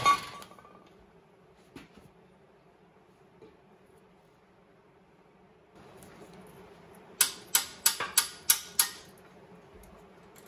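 A metal clank with a short ring at the start, then a quiet stretch. About seven seconds in comes a quick run of about seven hammer blows on the steel motor mount and frame.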